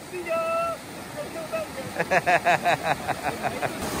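Fast creek water rushing over rocks, with a short drawn-out vocal call early on and then a burst of rapid laughter over it from about halfway through.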